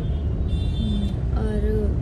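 Steady low rumble inside a car cabin, from the cab's engine and road noise.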